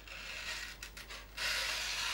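Small stainless pocket-knife blade (HX Outdoors EDC 020A) slicing through a sheet of paper: a quiet rasp at first, then a louder, steady cut lasting about a second near the end.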